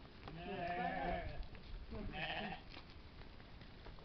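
Sheep bleating twice, a longer wavering bleat followed by a shorter one.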